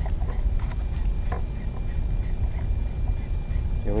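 Low, steady rumble of water and wind noise on the camera's microphone, with a few faint knocks.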